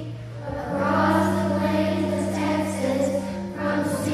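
Children's choir singing with musical accompaniment, with a brief dip about half a second in before the sustained notes come back in.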